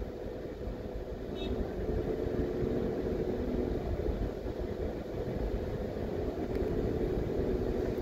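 A car driving slowly along a town street, heard from inside the car: a steady low rumble of engine and tyres with a faint steady hum.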